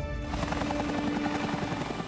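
Light helicopter running on the ground with its rotor turning steadily, with background music underneath.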